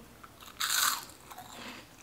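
A bite into a crunchy corn puff snack: one loud crunch about half a second in, followed by fainter crunching chews.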